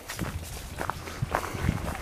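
Footsteps of a person walking on an outdoor path, a few soft steps over a low rumble of wind and handling on the microphone.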